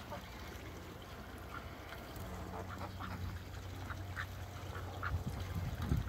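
Domestic ducks quacking: a string of short quacks spaced roughly half a second to a second apart, over a low steady hum.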